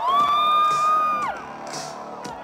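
A concertgoer close by lets out one long, high whoop. It rises at the start, holds for about a second, then drops off. Under it, loud live electronic dance music plays with a steady beat.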